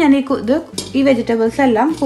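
Chopped vegetables tipped from a bowl into an empty stainless-steel pressure cooker, with pieces clattering against the metal pot, sharpest about three-quarters of a second in. A woman's voice speaks over it.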